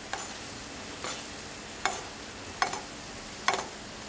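Milk and blue cheese sauce sizzling and bubbling steadily in a non-stick frying pan over medium heat. A metal spoon basting the hamburg steaks clicks against the pan about five times, roughly once a second.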